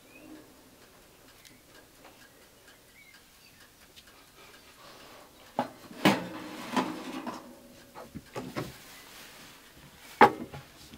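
Metal baking dish pulled out over the wire rack of a small DeLonghi countertop convection oven: after a few quiet seconds, a string of clunks and scrapes starts about five and a half seconds in, the loudest about six seconds in.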